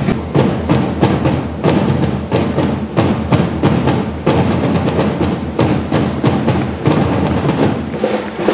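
Drumming: a fast, steady run of drum strokes, several a second, with heavy thuds underneath.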